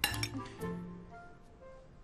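Tableware clinking sharply at the start and ringing briefly, with a second lighter clink just after, over soft background music.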